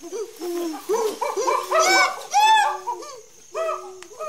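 Chimpanzee pant-hoot: a series of hoo calls that quicken and climb in pitch to loud, high climax calls about two seconds in, then fall back to lower hoots. A steady high insect drone runs underneath.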